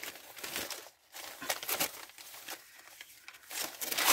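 Gift-wrapping paper being handled and crumpled: soft, intermittent rustling and crinkling in short spells.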